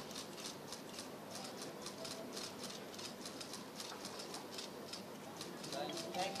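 Many press cameras' shutters clicking rapidly and irregularly as a group poses for photographs, over a low murmur of background voices.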